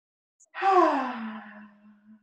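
A woman's long, audible sigh on the exhale: it starts about half a second in, glides down in pitch and is held low, fading away over about a second and a half.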